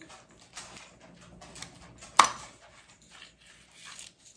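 Light taps and scrapes of a small plastic cutter pressing through a sheet of gummy candy dough on a tray, with one sharp click just over two seconds in.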